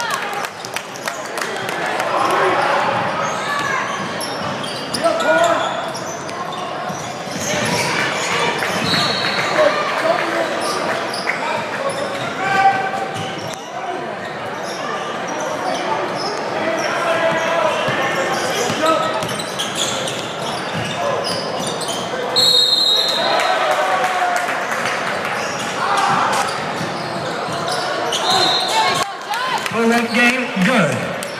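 Live sound of a basketball game in a reverberant gym: the ball bouncing on the hardwood court, sneakers squeaking a few times, and indistinct shouts and talk from players and spectators.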